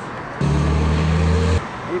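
A loud, steady low-pitched hum from a road vehicle's engine close by, lasting about a second and starting and stopping suddenly.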